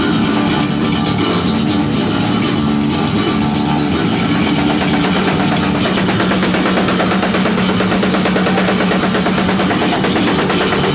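Loud live heavy rock from an electric bass guitar and a drum kit played together, the bass holding one long low note through the second half.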